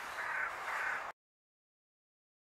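A bird calling outdoors: about three repeated calls roughly half a second apart, then the sound cuts off abruptly about a second in.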